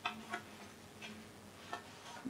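Faint handling of papers: a few soft, irregular clicks and rustles.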